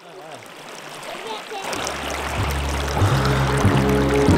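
Shallow river water running and splashing, with background music with a steady beat fading in about halfway through and growing louder.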